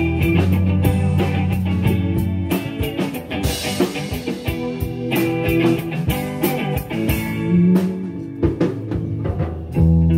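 Live rock band playing an instrumental passage: electric guitars held over a steady drum-kit beat, with a cymbal wash about three and a half seconds in.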